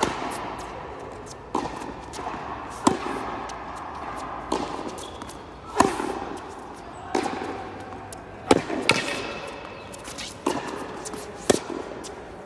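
Tennis ball struck by rackets and bouncing on a hard court during a baseline rally: about ten sharp pops, one every second or so.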